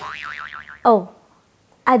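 Cartoon-style 'boing' comedy sound effect: a tone that sweeps up and then wobbles rapidly in pitch for under a second, cutting off as a short spoken 'Oh' comes in.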